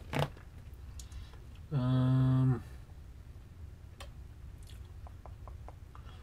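A man's held, level-pitched 'hmm' lasting just under a second, about two seconds in. A few faint mouth clicks or small ticks come before and after it.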